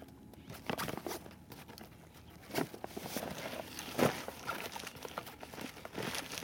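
Nylon backpack being handled and turned over on rock: rustling fabric and straps with a few short knocks, the loudest about four seconds in.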